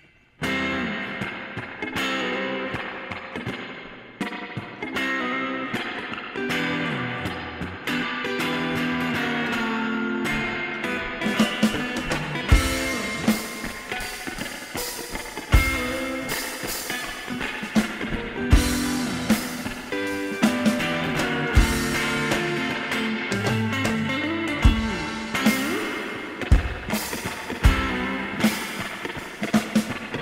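Guitar strumming and holding chords, joined about eleven seconds in by a drum kit with cymbals and a bass drum hit every few seconds: a loose two-piece rock jam.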